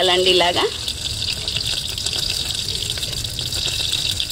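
Water poured onto an unglazed terracotta pot lid, running and spreading steadily across the clay.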